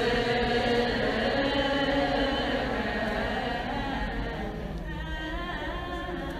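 A group of voices chanting a slow hymn together, long held notes, growing slightly quieter toward the end.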